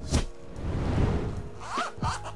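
Zipper on a fabric phone-holder case being drawn shut: a small click, then a single rasping pull lasting about a second.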